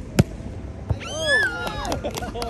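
Volleyball being hit by hand: a sharp smack about a fifth of a second in, the loudest sound, and a second, lighter smack just under a second in. Then a player's drawn-out shout, its pitch rising and falling.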